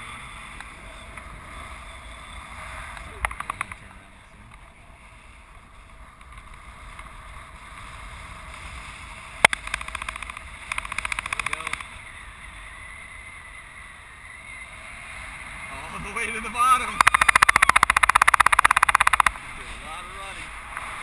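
Wind rushing over the microphone in paraglider flight. Short bursts of rapid fluttering buffet come and go, and the longest and loudest comes near the end.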